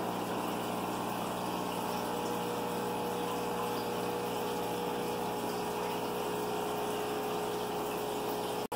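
Aquarium filtration running steadily: a water pump hums with a constant tone while air bubbles stream up through the tank water.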